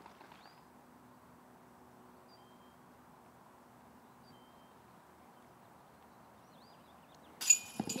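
Quiet outdoor ambience on a park course, with a few faint, short bird chirps scattered through it and a faint low hum in the background. Near the end comes a brief, much louder noise.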